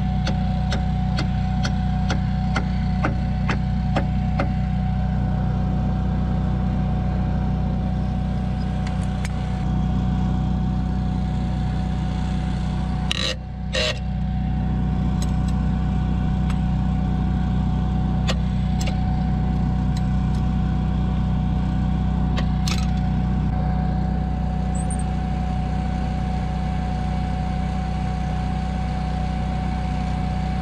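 Quick hammer blows on the steel top-roller mount of a John Deere 450J dozer, about three a second for the first few seconds, then a few scattered strikes. An engine idles steadily underneath throughout.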